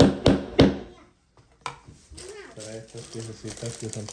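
A small hammer knocking three times on a wooden craft-kit piece, about a third of a second apart, followed a second later by a lighter single knock.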